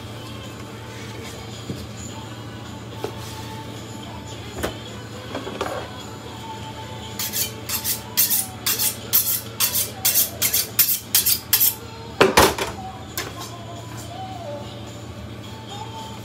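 Chef's knife being honed on a sharpening steel: a quick, regular run of about fifteen metallic strokes, roughly three a second, followed by one louder knock.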